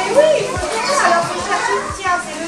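Several young children's voices chattering and calling out at once across a classroom.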